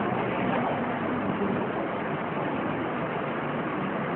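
Steady, even hiss of background noise underlying the recording, with no clear event in it.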